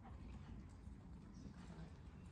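Faint, muffled hoofbeats of a horse moving over soft arena footing, over a low steady background rumble.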